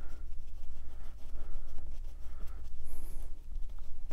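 Small paintbrush dabbing and stroking acrylic paint onto a stretched canvas: soft, irregular scratchy strokes, over a steady low hum.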